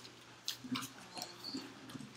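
Faint classroom background: scattered small clicks and rustles with brief, low snatches of voices.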